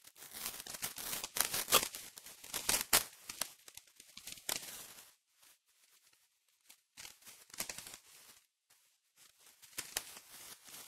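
Paper envelope being torn open and rustled by hand for about five seconds. After a pause there is a shorter rustle of paper.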